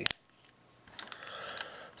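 Hard plastic toy parts being handled: one sharp click right at the start, then faint rustling with a few small clicks as a small plastic gun is worked into a transforming action figure's fist.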